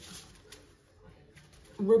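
Near silence: faint room tone during a pause in talk, then a voice starts speaking near the end.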